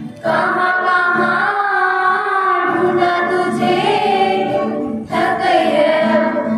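A group of children singing together in unison into microphones, holding long notes, with brief breaths between phrases just after the start and about five seconds in.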